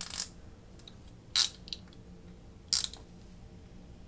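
Wera 8001A Zyklop Mini 1 bit ratchet clicking in three short bursts, about a second and a half apart, its pawl ticking as the head is worked by hand.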